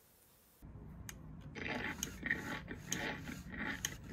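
LEGO WeDo alligator program running: a chomping, chewing sound effect plays from the laptop while the WeDo motor works the alligator's jaws at the same time. A steady low hum starts about half a second in, and the chomping joins it about a second later.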